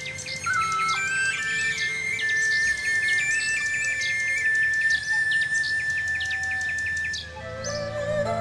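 A nightingale's song as a cartoon sound effect: quick repeated chirps and whistled notes, played over soft background music, dying away near the end.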